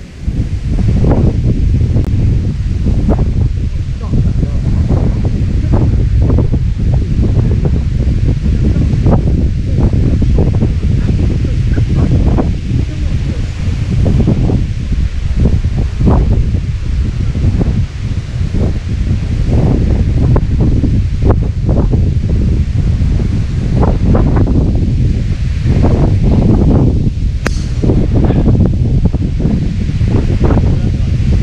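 Wind buffeting the microphone: a loud, steady low rumble with irregular gusts. Near the end there is a single sharp click, a golf club striking the ball off the tee.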